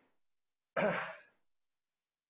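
A person's single short sigh, a breathy exhalation about a second in, lasting about half a second.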